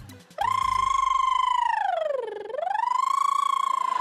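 A boy's made-up vocal noise: one long high-pitched tone that holds steady, swoops down about halfway through and climbs back up again.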